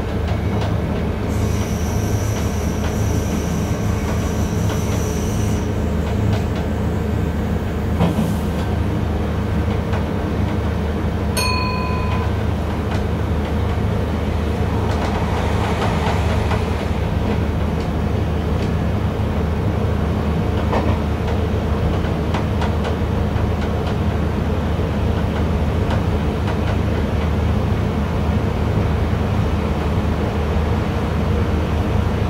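Train running at speed heard from inside the driver's cab: a steady low drone of the traction motor and wheels on the rails. A high thin whine sounds for a few seconds near the start, and a short electronic beep about a third of the way in.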